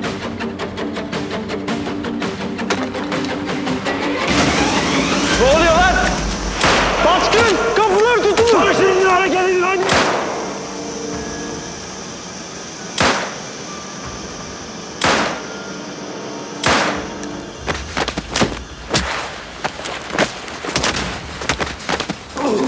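Action-scene soundtrack: a dramatic score swells over the first ten seconds. Then single gunshots ring out a second or two apart, coming faster near the end.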